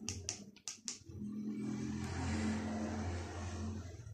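Four or five sharp clicks, then a motor vehicle passing by, rising and fading over about three seconds.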